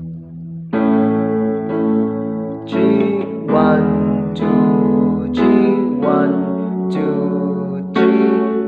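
Yamaha electronic keyboard playing the intro's chord progression in A major (A, E, F♯m, D / A, E, F♯m, E) with both hands at a slow tempo. A new chord is struck about once a second, each ringing into the next over a low sustained bass note.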